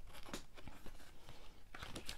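Faint rustling of card and packaging with a few light clicks as a stack of lobby cards is slid out and handled.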